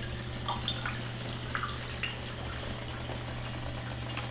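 Running steam distiller: a steady low hum with water trickling and a few faint drips.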